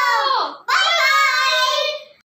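Children's voices calling out in two long, drawn-out sung notes. The first slides down and breaks off about half a second in, and the second is held steady until it stops near the end.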